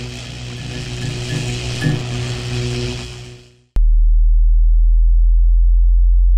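Title-sequence sound design: an electric buzzing hum that pulses about once a second fades out, and then a loud, steady, very deep synthetic tone cuts in abruptly about four seconds in and holds.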